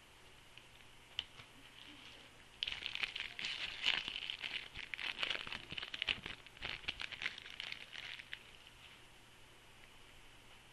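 Plastic wrapper of a football-card rack pack crinkling and tearing as it is pulled open: a dense crackling that starts suddenly about two and a half seconds in, runs for about six seconds and stops near the end.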